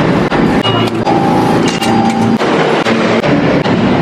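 New York subway train running through the station: a loud rumble with a steady whine that holds for about a second and a half in the middle. Two short high beeps sound through it.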